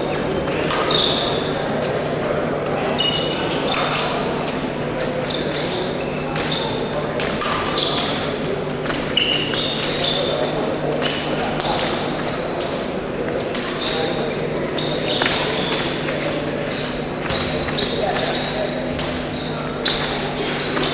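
Men's épée bout on a metal piste: irregular stamps and knocks of fencers' footwork, with short high metallic rings of blades touching, over the steady chatter and hum of a large, echoing sports hall.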